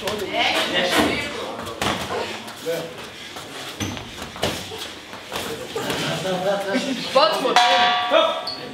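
Boxing gloves landing punches in a series of sharp smacks and thuds, with people's voices in between. Near the end a bell rings out with a steady metallic tone: the bell ending the round.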